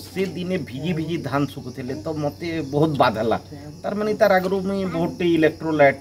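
A man speaking into a handheld microphone, answering an interviewer's questions.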